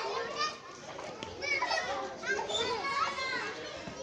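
Many children's voices chattering and calling out at once, overlapping.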